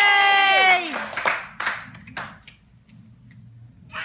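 A long, held 'yay!' cheer that drops in pitch and ends just under a second in, followed by a short run of scattered hand claps from a small group.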